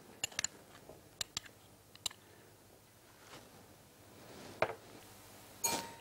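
A few light, sharp clicks of a metal spoon against a glass mixing bowl as honey is spooned onto berries. The loudest click comes a little before the end, followed by a brief clatter.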